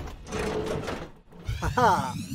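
Cartoon transformation sound effects over background music as a robot's tool arms are fitted: a noisy rush in the first second, then after a brief drop a rising electronic glide with a short pitched, voice-like sound near the end.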